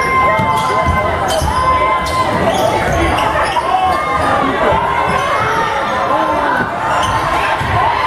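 Basketball game on a hardwood gym court: the ball bouncing on the floor amid voices, echoing in the gymnasium.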